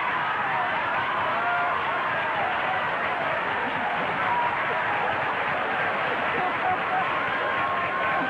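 Large studio audience laughing, a long, steady swell of many voices at once.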